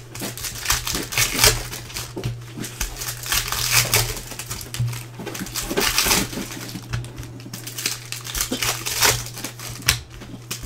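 Foil trading-card pack wrappers crinkling and rustling in irregular bursts as hands handle and open them, over a steady low hum.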